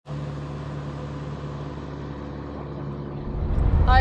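Car running, heard from inside the cabin: a steady low hum, with a low rumble that grows louder about three seconds in.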